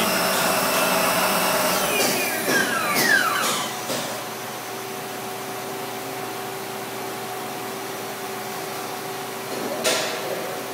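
Star SR-16 CNC Swiss-type lathe running with a steady machine hum. About two seconds in, a whine falls in pitch as a motor spins down, and the sound settles to a quieter, even hum. A sharp click comes at the very end.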